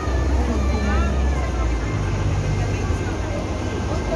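Busy shop and street ambience: a steady low rumble with indistinct voices in the background.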